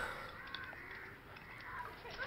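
Faint outdoor ambience with crows cawing in the background.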